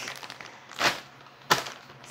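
Two brief rustles of plastic grocery packaging being handled, the second starting more sharply.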